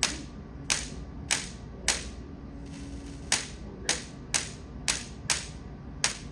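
Sparks jumping from a Van de Graaff generator's charged dome to a hand-held grounded discharge wand, each one a sharp snap, a small-scale lightning discharge. About nine snaps come roughly every half second, with a pause of about a second and a half in the middle.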